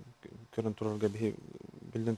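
Speech only: a man talking, a short phrase that trails off into a low, creaky, drawn-out hesitation sound near the end.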